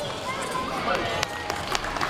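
A call of "blue" over crowd chatter in a large hall, with two sharp knocks near the end.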